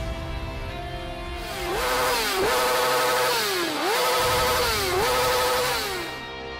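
Motorcycle engine sound effect revving, its pitch dropping and climbing back about four times, over background music.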